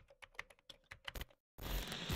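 Faint keyboard typing clicks, a quick irregular run of keystrokes, used as the sound effect for text being typed out on screen. The typing stops about one and a half seconds in, and a louder noise begins near the end.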